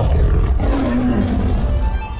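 A big cat's roar sound effect, starting abruptly and loud over booming intro music, its pitch falling as it trails off.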